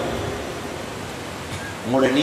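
Steady background hiss in a pause in a man's speech; his voice trails off at the start and comes back in just before the end.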